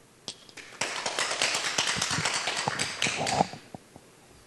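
Applause from a small audience: a few scattered claps, then a burst of clapping lasting about two and a half seconds that dies away near the end.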